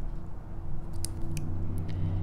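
Two pairs of chain nose jewelry pliers working a small metal jump ring, giving a few light metallic clicks, over a steady low hum.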